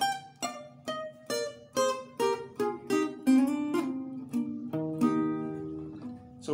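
Acoustic guitar playing a single-note highlife solo line: about a dozen picked notes, roughly two a second, ending on a held, ringing note.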